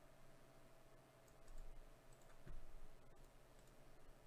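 Near silence: room tone with a few faint clicks and a soft low thump about two and a half seconds in.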